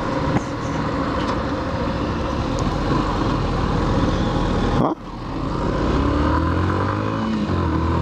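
Yamaha Factor 150 single-cylinder motorcycle engine running while riding, with wind rushing over the microphone. The sound drops briefly about five seconds in, then the engine note rises steadily as the bike accelerates.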